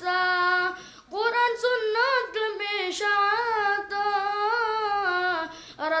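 A boy singing a nazm, a devotional poem, unaccompanied. He holds long notes with wavering ornaments, breaking off briefly about a second in and again just before the end.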